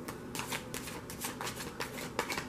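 A deck of tarot cards being shuffled hand over hand: a quick, irregular run of light papery slaps and flicks, several a second, starting about a third of a second in.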